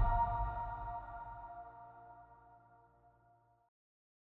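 The ringing tail of an electronic logo sting: a held chord of steady tones over a low bass note, fading out about three seconds in.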